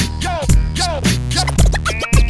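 Hip hop instrumental beat with deep bass and a kick drum about twice a second, with turntable scratching cut over it in short, repeated strokes.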